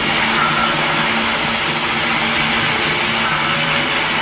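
Soundtrack of street-procession footage being played back: a loud, steady wash of noise with faint music underneath, cutting off suddenly at the end.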